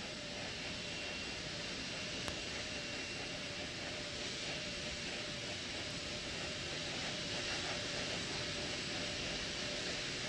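Steady rushing hiss of launch-pad background noise with a faint steady whine running through it, and one small click about two seconds in.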